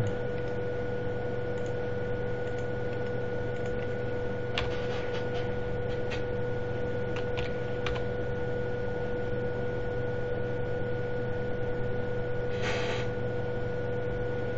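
Steady electrical hum with a constant high whine over low background noise, broken by a few faint light clicks around the middle and a short hiss near the end.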